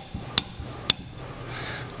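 Two sharp metallic clacks about half a second apart, from the parts of a rusted, seized rear disc brake caliper knocking together as it is worked apart by hand.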